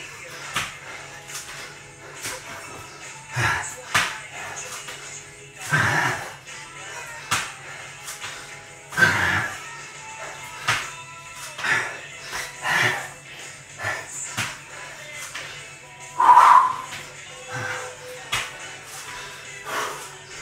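A man doing burpees on a tiled floor: hands and feet slapping down and jump landings repeated every couple of seconds, with grunting breaths, over background music.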